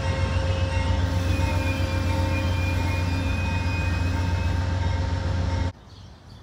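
Amtrak Superliner passenger train rolling slowly past the platform: a loud, steady deep rumble with high, thin squealing tones over it, as the train runs in to stop. The sound cuts off abruptly near the end.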